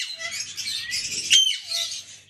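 Pet parrots chattering continuously in high chirps, with two sharp squawks, one at the start and one about one and a half seconds in.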